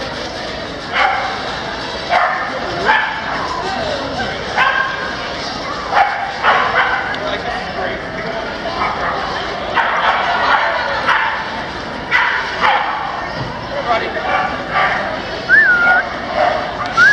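Dogs barking and yipping in short, sharp calls at irregular intervals, one every second or so, over a steady background of people talking.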